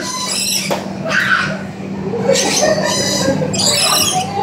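Rainbow lorikeets screeching: a run of about four harsh, high-pitched calls in short bursts, with a steady low hum behind them.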